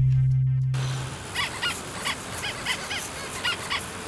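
A held background-music chord fades out within the first second. It gives way to outdoor ambience, a steady hiss with short, high chirps repeating several times a second.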